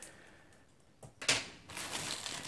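About a second of near silence, then a small click and a short crinkle of a plastic courier mailer bag being handled, with faint rustling after it.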